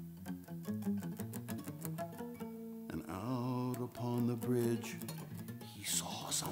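Twelve-string acoustic guitar fingerpicked, single notes ringing out one after another; about halfway the playing thickens into denser notes that waver and bend in pitch.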